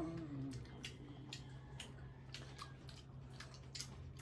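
Faint, scattered clicks and smacks of people eating fruit: chewing and fingers handling fruit pieces, over a steady low hum. A child's voice trails off at the very start.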